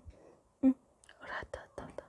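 A woman whispering to herself under her breath: one short voiced sound about two-thirds of a second in, then breathy whispered words in the second half.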